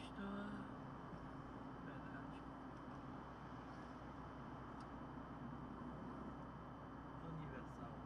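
Steady engine and road noise inside a moving car, with a short voice at the very start and another brief one near the end.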